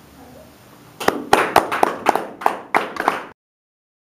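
Hand clapping from a small group: about ten sharp, separate claps starting about a second in, then the sound cuts off abruptly.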